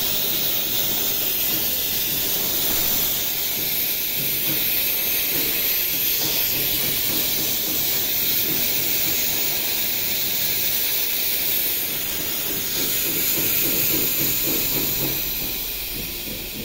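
Test pressure being vented from a car air-conditioning system through a brass manifold gauge set, a loud steady hiss of escaping gas that eases slightly near the end. The system held the pressure, so the repair is leak-free and the system is being emptied before it goes on vacuum.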